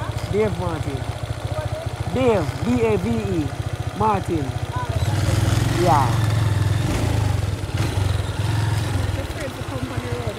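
Motorcycle engine idling, then running louder for about four seconds from halfway through as the bike pulls off slowly.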